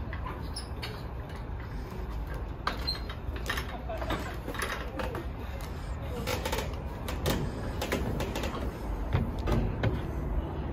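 Footsteps on a grated walkway made of square openings: a run of irregular clicks and knocks over a steady low rumble.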